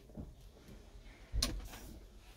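Quiet room with one soft knock about one and a half seconds in, followed by a brief rustle.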